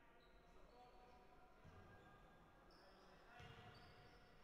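Near silence in a basketball hall: faint thuds of a basketball bouncing on the court, once about halfway through and again near the end.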